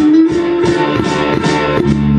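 Rock music with bass guitar and electric guitar, notes picked to a steady beat of about four a second under a long held note that slowly rises in pitch.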